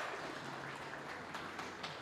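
Congregation applauding: a steady patter of many hands clapping, fading slightly toward the end.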